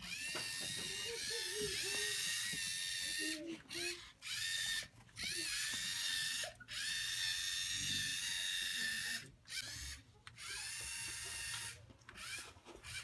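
LEGO Mindstorms robot's electric motors and plastic gearing whining as the robot walks along, in high-pitched runs of one to three seconds with short pauses between. Each run starts with a quick rise in pitch.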